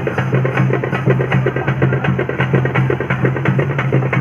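Fast, loud festival drumming: rapid, even drum strokes over a steady low hum.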